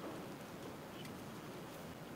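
Faint, light rustling of heavy monofilament fishing line handled by fingers while being plaited, over low room tone.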